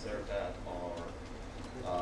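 Indistinct, quiet speech: a voice talking in short phrases, with no clear words.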